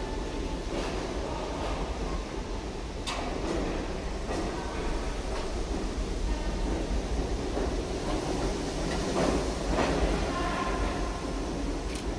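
New York City subway train running past a station platform: a steady rumble with sharp clacks about once a second as the wheels cross rail joints, swelling louder about three-quarters of the way through.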